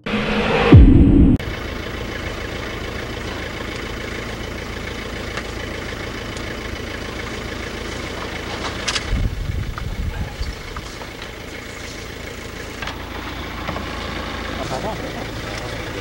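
Steady engine noise of a vehicle idling, heard from inside it on old camcorder audio. It follows a loud sound that falls in pitch in the first second or so, and a few knocks and thuds come around the middle.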